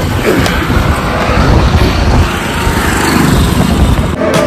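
Road traffic passing close by on a highway: a steady, noisy rush of vehicles with a low rumble.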